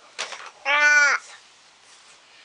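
A single drawn-out vocal cry, about half a second long, held on one pitch and dropping off at the end, from a person's voice.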